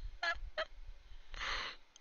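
A woman laughing hard: two short, high, honking squeaks, then a breathy rush of air about a second and a half in.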